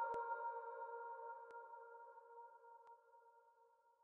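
The closing held chord of an electronic dance track, a few steady tones fading out slowly to near silence.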